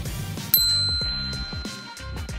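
A bright, bell-like ding sound effect strikes about half a second in and rings on, fading slowly, over background music.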